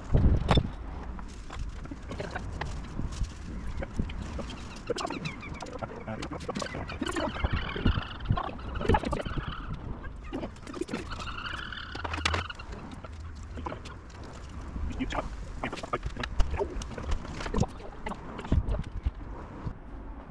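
Scattered small clicks and taps of hands and a tool working at a classic Mini's rear light cluster, fastening its small nuts and screws through the rear panel.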